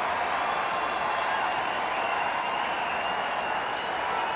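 Ballpark crowd applauding a home run: a steady wash of clapping and crowd voices.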